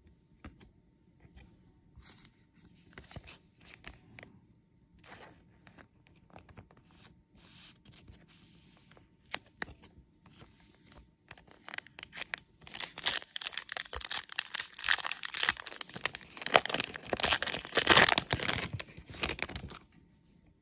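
Trading cards and a clear plastic card sleeve being handled. Light rustles and card slides come first, then about seven seconds of loud plastic crinkling in the second half.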